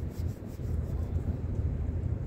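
Low, uneven outdoor rumble with wind buffeting the phone's microphone.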